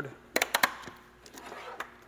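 Clamps being handled on an aluminium guide rail: a few quick, sharp clicks about half a second in, then faint handling noise and one more light click near the end.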